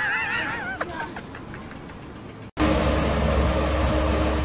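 A person's high, wavering cry or shriek of laughter for about a second, followed by a few light clicks. After a sudden cut about two and a half seconds in comes a loud, steady, low engine-like drone.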